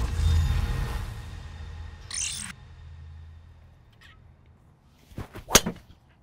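Edited transition sound effect: a swelling whoosh over a deep boom, then a short glitchy crackle about two seconds in. Near the end comes a sharp, loud crack, the loudest sound here: a PING G430 Max driver striking a golf ball off the tee.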